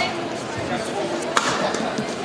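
A badminton racket strikes a shuttlecock once a little past halfway, making a single sharp crack, over a background of voices.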